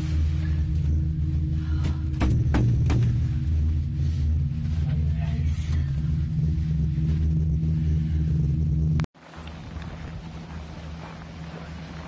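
Steady low rumble inside a moving POMA gondola cabin, with a brief clatter about two to three seconds in. It cuts off abruptly about nine seconds in, and a fainter, hissy outdoor sound follows.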